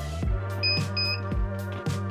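Background lo-fi music with a steady beat. Near the middle come two short high beeps about half a second apart, from a sublimation heat press's timer signalling the end of a press.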